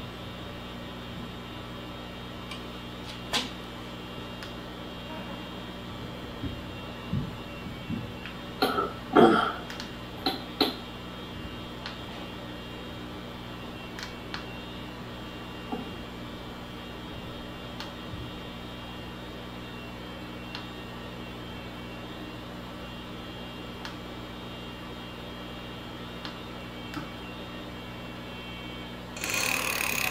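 Steady electrical hum in a quiet workshop, broken by a few light clicks and taps from handling the e-bike's handlebar display and its buttons, with a brief throaty sound about nine seconds in.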